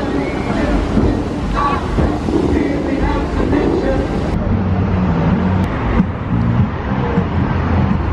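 Fountains of Bellagio jets rushing in a steady spray, with wind on the microphone and onlookers' voices. About halfway through it cuts to the chatter of a crowd on a busy walkway.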